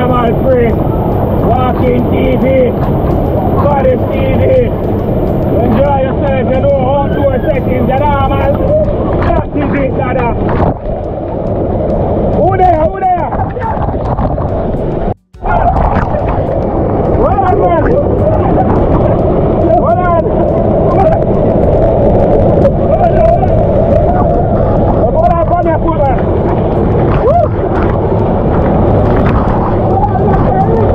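Waterfall pouring hard onto and around the camera, a loud steady rush of water, with a man yelling and exclaiming over it. The sound cuts out for a moment about halfway.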